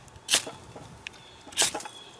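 A steel blade scraped hard down a large ferrocerium fire-starting rod, two short rasping strikes about a second and a quarter apart, throwing a shower of sparks.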